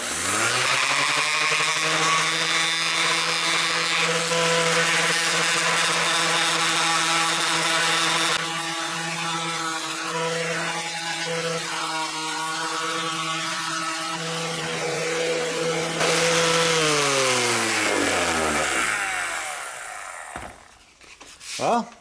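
Corded random orbital sander spinning up and running steadily as it sands a plastic panel with 320-grit paper, quieter for a stretch in the middle. About 17 seconds in it is switched off and its pitch falls as it winds down to a stop.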